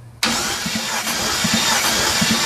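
Chevrolet S10 pickup's engine catching abruptly a fraction of a second in, then running loudly, heard close up in the open engine bay.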